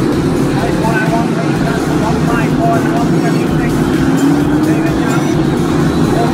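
Several stock car engines running at race speed on the track, a steady loud rumble, with one engine note rising slowly about four seconds in as a car accelerates.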